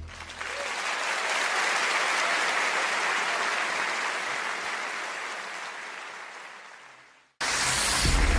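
Audience applause at the end of a live song. It builds in the first second, slowly fades, and is cut off abruptly about seven seconds in. The next recording starts straight after with a loud, low sound.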